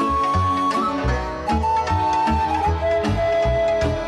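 Romanian taraf (lăutari folk band) playing an instrumental medley: a lead melody of long held notes that step down in pitch, over a steady pulsing bass and string accompaniment.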